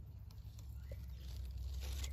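Tomato leaves rustling faintly as a hand parts the foliage, over a steady low rumble.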